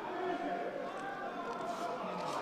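Indistinct talking from voices in the arena, no words clear enough to make out.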